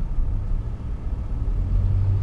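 Engine and road noise of a vintage car heard from inside the cabin while driving: a steady low drone that grows a little stronger in the second half.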